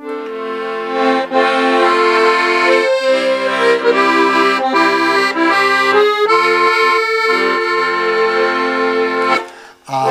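Piano accordion playing a hymn introduction in sustained chords with a melody on top, stopping just before the singing begins.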